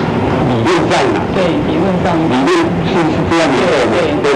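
Mandarin speech from a played-back interrogation tape: a prosecutor questioning a witness, saying "怎麼用你當然不清楚" ("of course you don't know how it's used") and "我沒有說你知道他怎麼用" ("I didn't say you knew how he used it").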